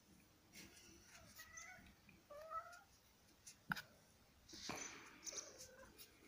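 A cat meowing faintly, a few short meows between about one and three seconds in, followed by a sharp click and a brief burst of noise.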